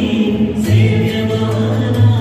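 Devotional Hindu song for Navratri, sung by several voices over a steady beat with a strong bass line, played loud through stage loudspeakers.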